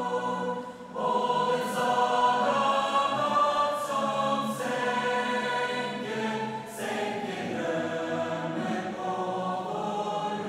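A large choir singing, holding long notes, with a brief drop in loudness about a second in before the voices come back in.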